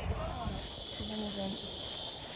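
A steady, high-pitched shrill of insects calling together, with faint voices talking underneath.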